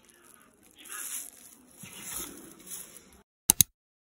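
Thin clear plastic food wrapping crinkling as it is handled, in a few short bursts. Near the end there are two sharp clicks in quick succession.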